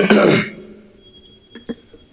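A man clears his throat once, loudly, into a close microphone, for about half a second at the start. It is followed by quiet with a faint click near the end.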